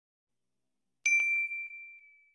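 Notification-bell sound effect: a single bright ding about a second in, with a few quick clicks at its start, ringing out and fading over about a second.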